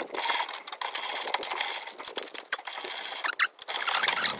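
Manual top-wind trailer tongue jack being hand-cranked: a rapid, steady run of metallic clicking and ratcheting from the jack's gearing.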